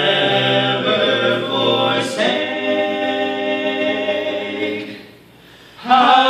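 Male vocal quartet singing a hymn unaccompanied in close harmony, holding long chords. The sound dies away about five seconds in, and after a short hush the voices come back in loudly with a new chord near the end.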